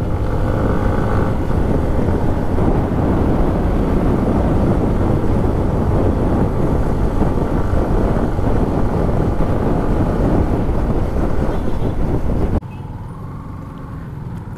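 Motorcycle riding at speed: wind buffeting the microphone over the engine. About a second before the end the sound drops suddenly to a much quieter engine and road sound.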